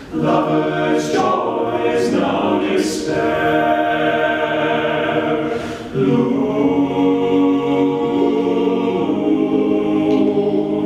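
Men's a cappella ensemble of seven voices singing sustained chords in close harmony, with a short break between phrases about six seconds in.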